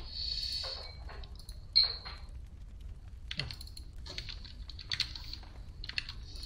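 Typing on a computer keyboard: scattered keystrokes and clicks, with one sharper, louder click about two seconds in.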